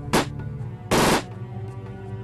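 Gunfire: one sharp shot just after the start, then a short burst of rapid shots about a second in, over a film score of sustained tones.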